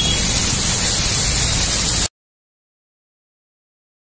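Steady hiss of rain and water on a flooded street, which cuts off abruptly about two seconds in and is followed by complete silence.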